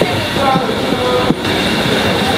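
Steady, fairly loud background din of a busy street market, with faint indistinct voices in it.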